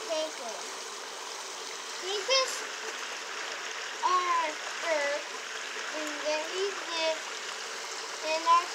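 Humboldt penguins calling in short, pitched cries that bend up and down, several of them, clustered around two, four and six to seven seconds in, over a steady rush of running water.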